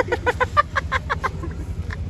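A man laughing hard: a quick run of short "ha-ha" pulses, about seven a second, that dies away after about a second and a half.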